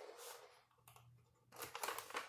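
A stiff diamond-painting canvas and its release paper crackling and rustling faintly as they are unrolled and pressed flat by hand, in a few short spells of light clicks, the busiest near the end.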